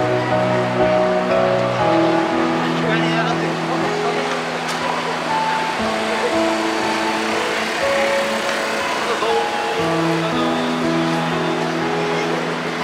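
Busy city sidewalk ambience: crowd chatter and passing car traffic, with music of long held notes that change pitch every second or so playing over it.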